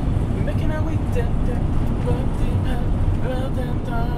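Steady road and engine rumble inside the cab of a moving camper van, with faint, muffled voices under it.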